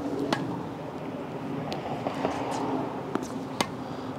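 Tennis balls being hit and bouncing on a hard court: a handful of short, sharp pops, the crispest about a third of a second in and again just before the end. A steady low hum lies underneath.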